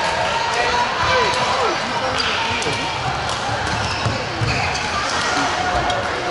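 Busy badminton hall: court shoes squeaking in short rising and falling squeals on the court floor and sharp racket-on-shuttlecock hits, over a steady background of many voices.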